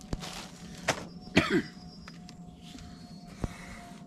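Plastic bread-roll bag rustling and crinkling as it is handled, with a few sharp clicks and a short vocal sound about a second and a half in.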